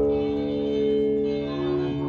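Improvised live ensemble music: a chord of several sustained, ringing tones held steady like a drone, with a short higher note coming in about three-quarters of the way through.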